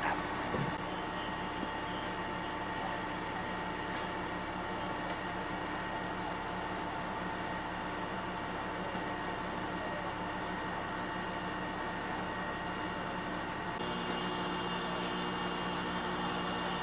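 Steady drone of engine-driven machinery running, with several steady hum tones over an even noise; about 14 seconds in, more tones join and the drone thickens.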